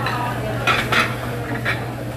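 Dishes and cutlery clinking in a restaurant: several short, sharp clinks over a steady low hum.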